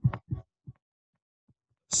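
Mostly silence, broken by a few short, low thumps in the first second and one faint one about a second and a half in.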